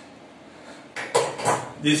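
A few quick metallic clinks and rattles about a second in, from a steel caliper and a steel longsword blade being handled.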